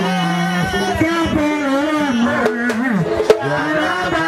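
Voices singing a Vodou ceremonial song with held, sliding notes over drumming. One sharp click sounds about three seconds in.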